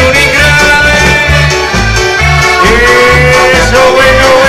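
Amplified live dance band playing an accordion-led tune over a bouncing bass beat of about four pulses a second; a long held note comes in about two and a half seconds in.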